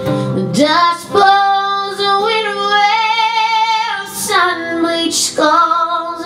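A woman singing live and accompanying herself on acoustic guitar. She holds one long note from about a second in until about four seconds, then starts a new phrase.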